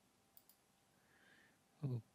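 Two faint computer mouse clicks in quick succession about a third of a second in; otherwise near silence, with a spoken word starting near the end.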